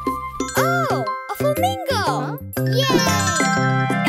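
Bright children's-song backing music, over which a child's voice makes several swooping sounds that slide up and down in pitch.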